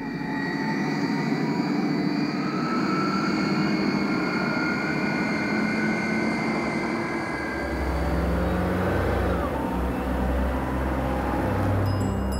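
Jet aircraft flying past: a steady roar with high whining engine tones that slowly shift in pitch, joined by a deep rumble about eight seconds in.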